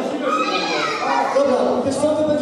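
Children playing and calling out, their high voices overlapping with adult chatter in a large echoing hall.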